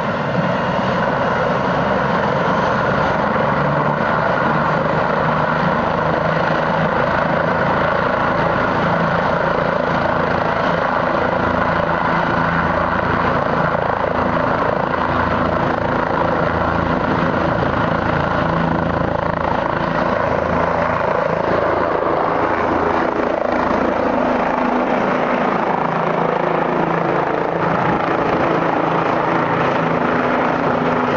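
Two-bladed light turbine helicopter running with its rotor turning on the ground, then lifting off and climbing away. The sound is loud and steady, with a constant whine; its low end thins out about two-thirds of the way through.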